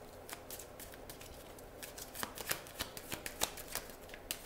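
Tarot cards being shuffled by hand: a quiet run of irregular, short card flicks and slaps, sparse at first and busier from about halfway through.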